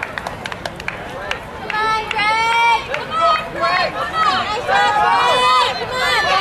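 Spectators shouting encouragement to passing runners, several voices overlapping in high-pitched yells that get loud about two seconds in.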